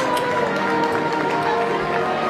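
Marching band playing its halftime show: brass and woodwinds holding chords that shift every half second or so.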